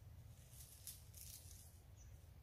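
Near silence with a low steady rumble, and a brief faint rustle of dry leaves in the middle.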